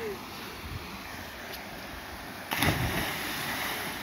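A person plunging into a deep rock pool: one big splash about two and a half seconds in, over the steady rush of a small waterfall.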